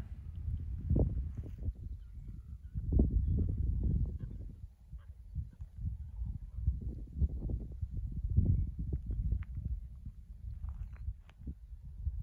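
Wind buffeting a phone's microphone outdoors: an uneven low rumble that swells and fades, with a few faint clicks.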